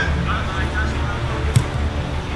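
Steady low background music under faint, distant voices, with a single short thump about one and a half seconds in.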